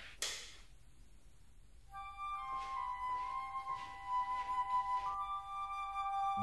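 A light switch clicks once just after the start. About two seconds in, soft music with long held high notes begins.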